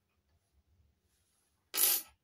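A miniature stainless-steel toy spoon set down and slid across the table, giving one short scrape near the end.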